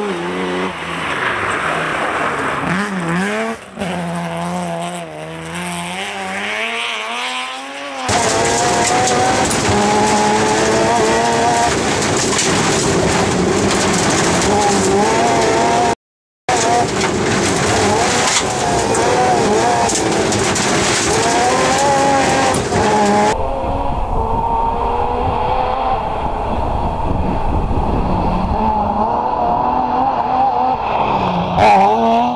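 BMW M3 rally car engine driven hard on a gravel stage, revving up and dropping over and over through gear changes. For the middle stretch it is heard loud from inside the car, with a brief dropout. Near the end it is heard from the roadside as the car approaches, with a low wind rumble on the microphone.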